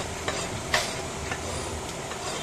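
A few light knocks against a wooden chopping block as a goat head and cleaver are handled on it, the sharpest just under a second in, over a steady hiss.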